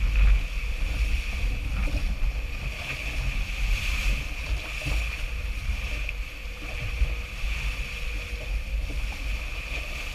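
Wind buffeting the camera's microphone, an uneven low rumble, on a catamaran under sail, with a steady hiss above it.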